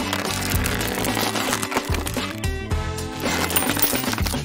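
Background music over the crackling and crunching of a hardened chocolate shell being crushed by hand around a balloon.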